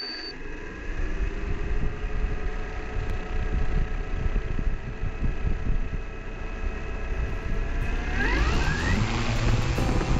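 3DR Solo quadcopter's electric motors and propellers whirring at idle on the ground in a steady hum, then spinning up with a rising whine about eight seconds in as the drone takes off.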